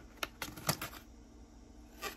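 Cardboard protector box being pulled open by hand: several sharp clicks and scrapes of the flaps in the first second, then quieter handling.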